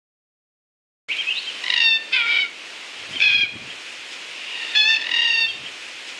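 A bird giving several short calls in quick groups, each a stack of clear ringing notes, over a steady outdoor hiss; the sound cuts in abruptly about a second in, after silence.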